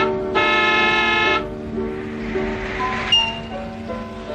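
A car horn sounds once, a steady honk about a second long, over film-score music.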